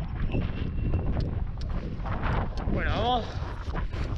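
Wind buffeting an action camera's microphone, with scattered clicks and crunches from a bike rolling slowly over loose scree. A short wordless vocal sound, a hum or groan that bends in pitch, comes about three seconds in.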